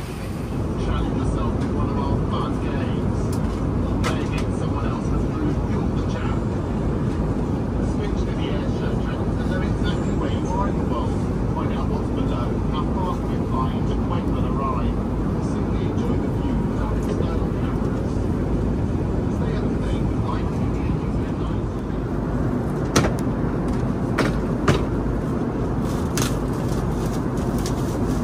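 Steady airliner cabin noise, a low rush of air and engines, with people talking indistinctly in the background. A few sharp clicks come near the end.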